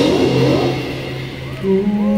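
Live band music: the drums and full band stop as it opens, leaving a sliding, fading tone, and about a second and a half in a steady held chord comes in.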